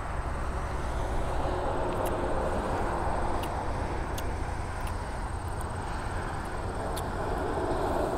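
Steady low rumble of wind buffeting the microphone outdoors, with a faint hum of background noise and a few small clicks.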